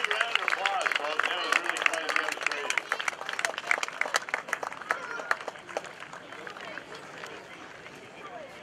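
Spectators clapping amid background chatter, the clapping thinning out and dying away over the last few seconds.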